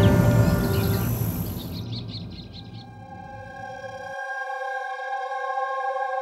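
Background music in a scene transition: the dense music fades out over the first two seconds, a few brief high chirps sound around two seconds in, then a sustained synthesized chord is held and slowly swells.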